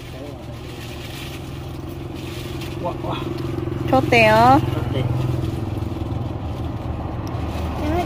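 A vehicle engine running with a steady low drone that grows gradually louder; a voice calls out briefly about four seconds in.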